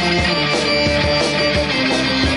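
Live punk rock band playing an instrumental stretch of the song: loud electric guitar over bass and a steady drumbeat, with no vocals.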